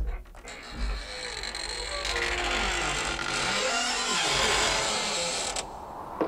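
Creaking sound effect, like a door slowly swinging open: a long, scratchy creak with a wavering, sliding pitch that stops about five and a half seconds in.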